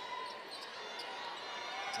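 Basketball dribbled on a hardwood court: a few faint bounces over the steady murmur of an arena crowd.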